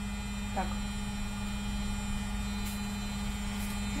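A steady low electrical hum, with a couple of faint clicks late on.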